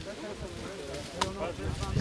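An axe strikes the trunk of a sapling once, a sharp blow about a second in. Faint talk from people standing close by runs under it.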